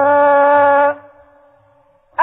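A single voice in melodic Quranic recitation (tajweed), holding one long steady note that ends about a second in and leaves a faint echoing tail.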